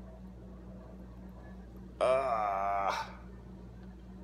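A single drawn-out, low-pitched vocal sound lasting about a second, starting about halfway in and dipping in pitch at its end, over a steady low electrical hum.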